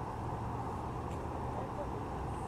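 Steady low rumble of idling vehicles and street traffic, with a constant low hum and no sudden sounds.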